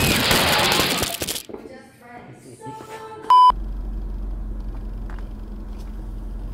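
A burst of noise in the first second and a half, then a single short, loud electronic beep a little over three seconds in, followed by a steady low hum.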